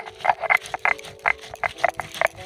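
Stone roller on a flat grinding stone (sil-batta), crushing dried red chilies and cumin seeds in a quick run of crunching strokes, about five a second.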